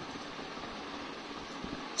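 Steady background hiss with no distinct events, the line and room noise of a voice call between speakers.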